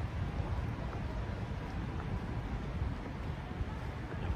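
Street ambience: a low, uneven rumble with wind buffeting the microphone, and no single sound standing out.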